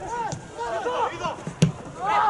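Men's voices shouting and calling out at a football match, with one sharp knock about one and a half seconds in.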